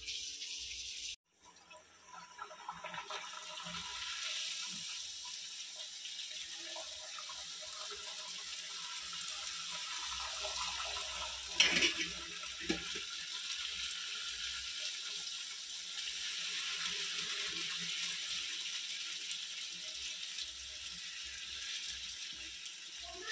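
Luchi deep-frying in hot oil in a metal pan: a steady sizzle and bubbling that starts a second or two in, with one brief louder sound about halfway through.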